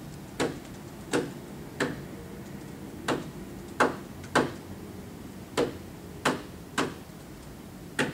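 A rhythm tapped out by hand, sharp taps in groups of three, with each group starting about every two and a half seconds. It is a five-beat measure with beats one, three and five sounding and beats two and four silent.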